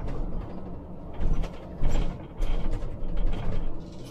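Inside the cab of a moving Scania Citywide articulated CNG bus: a steady low engine and road rumble, broken by several short rattling knocks from the bus's body and fittings.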